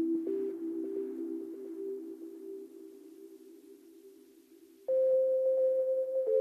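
Ambient electronic music played from a Toraiz SP-16 sampler: soft, sustained low synth tones, sent through echo and reverb, fade away over several seconds, then a new, louder tone comes in sharply near the end.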